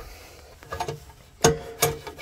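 Two sharp metallic knocks, each with a brief ring, from parts of a disassembled small engine being handled on the bench: one about a second and a half in and another near the end.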